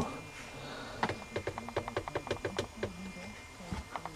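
A quick run of light, evenly spaced clicks, about six a second for under two seconds, as a variac's knob is turned down to lower the lamp's supply voltage.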